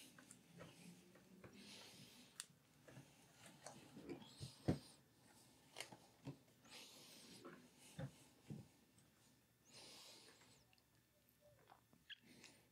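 Near silence: slow, faint breathing every few seconds, with a few soft scattered clicks and taps, the loudest about four and a half seconds in.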